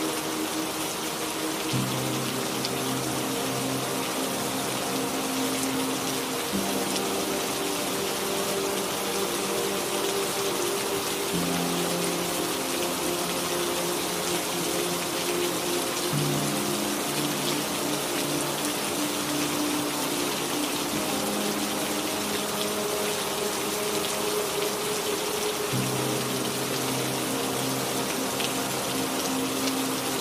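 Steady rain with soft ambient music: slow, sustained chords that change about every five seconds.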